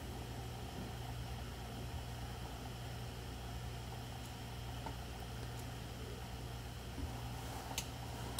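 Steady room tone: a low electrical hum under even hiss, with a faint click just before the end.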